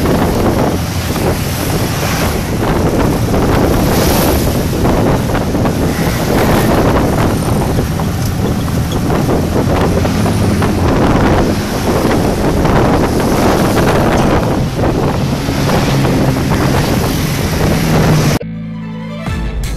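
Loud wind buffeting the microphone of a moving open-sided vehicle, over a steady engine drone and passing street traffic.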